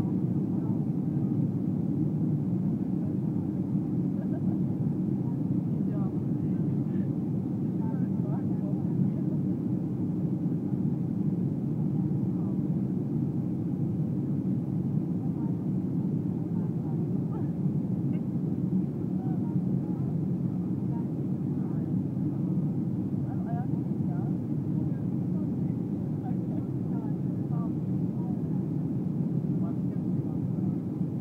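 Steady low rumble of engine and airflow noise inside a Boeing 737 jet's passenger cabin during descent, with faint voices in the background.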